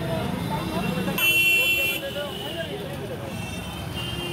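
Background hubbub of voices at an outdoor market, with a single high-pitched vehicle horn sounding for under a second about a second in.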